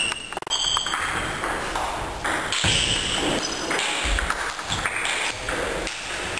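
Several short, high pings of a table tennis ball bouncing, over the steady background noise of a sports hall.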